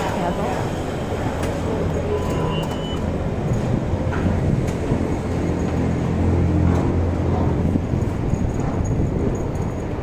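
Busy train station concourse ambience: a steady low rumble with background voices, and a short high beep about two and a half seconds in.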